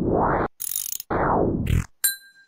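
Mechanical-machine sound effect of an on-screen function box as it processes a number: two stretches of ratcheting, gear-like grinding with a short hiss between them.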